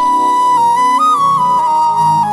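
Background music: a slow melody on a flute in long, held notes with small pitch steps, over a soft low accompaniment.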